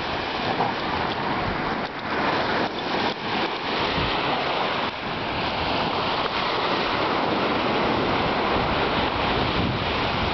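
Surf breaking and washing up on a sandy beach, a steady rush of waves, with wind rumbling on the microphone.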